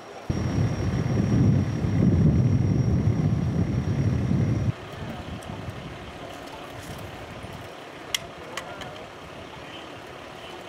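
Low rumble of a heavy vehicle's engine running close by. It starts abruptly and cuts off about halfway through, leaving quieter street noise with two sharp clicks near the end.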